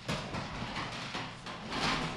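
Papers rustling and being handled close to a table microphone, with irregular light knocks against the table, starting suddenly and loudest near the end.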